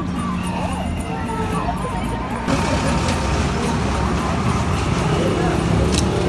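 People talking over road traffic. About two and a half seconds in, the sound changes abruptly to a louder, steady hiss.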